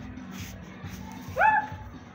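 A dog barks once, loudly and briefly, about one and a half seconds in, over background music.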